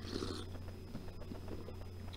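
A short slurping sip of hot coffee from a mug, lasting about half a second, then only a faint steady low hum.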